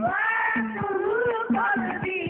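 A solo singer holds a long, wavering melismatic phrase that sweeps up in pitch at the start, over a few strokes of rebana frame drums.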